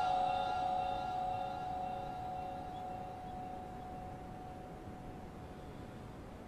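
The end of a male Quran reciter's long held note dying away: a steady tone that fades out over about four seconds, leaving faint hiss.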